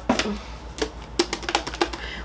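Tin cans and packaging handled and knocked together: a few light knocks, then a quick run of sharp clicks in the second half.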